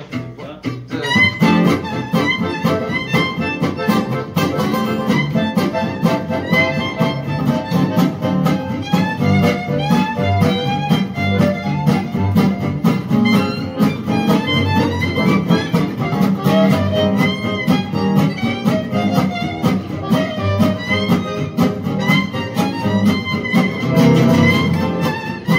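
Gypsy jazz band starting a tune about a second in: violin carrying the melody over steadily strummed acoustic rhythm guitar, double bass and accordion.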